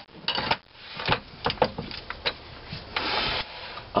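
Metal tools being handled at a lathe: a handful of sharp clicks and knocks, then a short scraping rub about three seconds in, as a large taper-shank drill bit is picked up and brought to the chuck.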